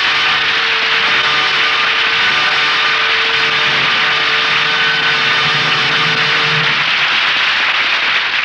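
Radio-drama orchestra playing the story's closing music: a loud held chord over a dense hiss-like wash, the held notes dropping out near the end.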